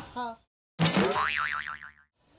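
Cartoon "boing" sound effect edited into the soundtrack. It comes in just under a second in, after a moment of dead silence, and lasts about a second, its pitch wobbling quickly up and down before it fades out.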